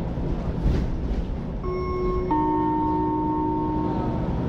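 Two-note falling chime of a city bus's passenger announcement system: a higher note about a second and a half in, a lower one just after, both ringing on until near the end. A steady low rumble runs underneath.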